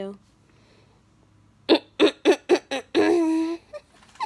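A person laughing in about five quick short bursts, then a brief held voiced sound.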